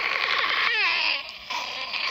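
A woman's breathy, wailing cry with a falling note a little under a second in, fading out by about halfway, followed by a fainter vocal sound near the end.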